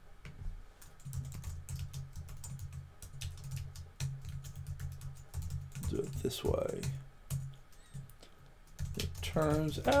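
Typing on a computer keyboard: a quick, irregular run of key clicks, over a steady low hum.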